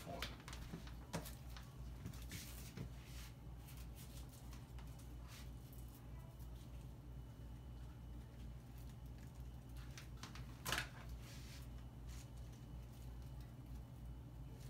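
Quiet room with a steady low hum and faint, scattered handling clicks and rustles from hot-gluing small fabric flowers onto a dress on a dress form. A brief, louder rustle comes about eleven seconds in.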